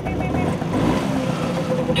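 Several classic two-stroke Vespa and Lambretta scooters idling together, a steady engine hum.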